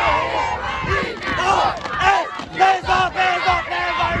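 A team of youth football players shouting together, many boys' voices yelling at once.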